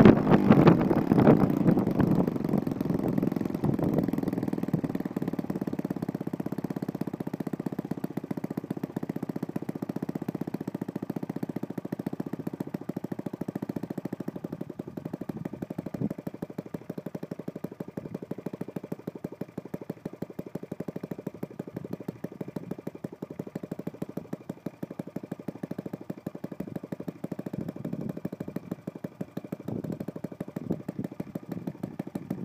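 Saito FA-72 single-cylinder four-stroke model aircraft engine, converted to spark ignition and running on a petrol mix, turning its propeller. It is loudest for the first few seconds, then settles to a steadier, quieter run.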